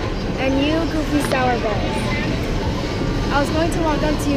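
A child's high voice talking animatedly in short phrases, over steady low background noise.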